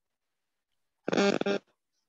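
A woman's short vocal sound held at one steady pitch, like a hummed "mmm", starting about a second in and lasting about half a second. The rest is silence.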